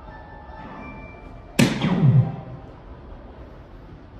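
A soft-tip dart striking an electronic dartboard about one and a half seconds in, with the machine's hit sound effect: a sharp burst that falls in pitch and fades within a second. It scores a single segment, not a bull. Faint steady electronic tones from the machine come before it.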